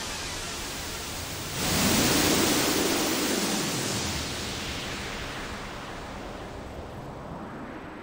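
Synthesizer noise wash: a hiss that swells up suddenly about a second and a half in, with a filter sweeping through it, then slowly fades away.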